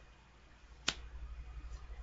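A single sharp snap of a tarot card being laid down on the table, a little under a second in, over a steady low hum.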